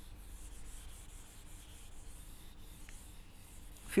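Whiteboard duster being wiped across a whiteboard: faint, repeated rubbing strokes.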